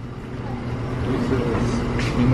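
Steady low mechanical hum of store equipment, with faint voices in the background.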